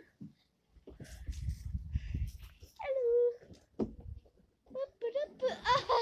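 A child sliding belly-down on a plastic garden slide, making a low rumble for a second or two, followed by one short held vocal cry and, near the end, the child's voice again.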